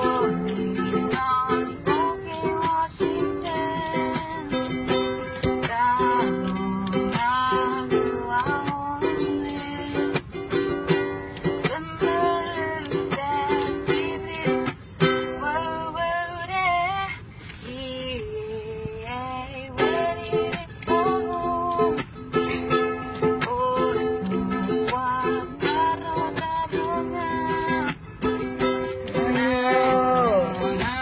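Ukulele strummed in a steady rhythm, with a voice singing the melody over it; the playing goes softer for a moment a little past halfway.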